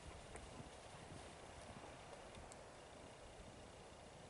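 Faint footsteps of buckskin moccasins in deep snow, growing fainter as the walker moves away.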